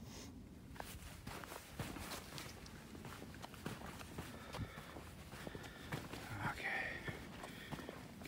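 Footsteps walking on a dirt trail strewn with dry leaves and twigs: a run of soft, irregular steps.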